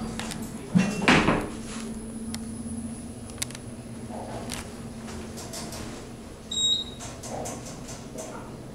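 Otis Gen2 elevator's center-opening doors closing with a thud about a second in, over a low hum that fades a few seconds later as the car rides. A short high electronic beep sounds near the end.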